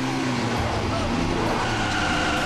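A car driving fast: steady engine and road noise.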